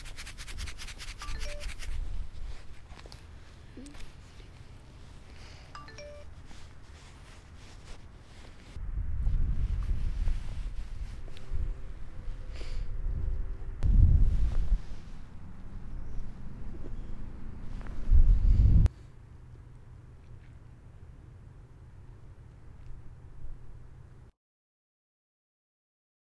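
Wind buffeting a camera microphone in gusts, with low rumbling surges a few seconds apart in the second half that cut off abruptly. A fast scratching of handling noise in the first two seconds.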